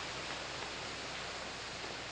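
Steady, even hiss from the background of a 1950s film soundtrack in a pause between lines, with no distinct events.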